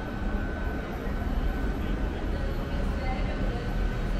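Steady low rumble of outdoor city ambience, with a faint thin high tone running through it.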